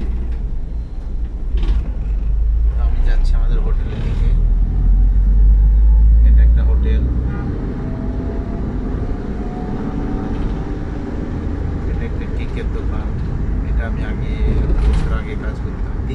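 Road vehicle rumble, deep and steady, swelling over the first few seconds and loudest around the middle. A faint rising whine runs through the middle of it.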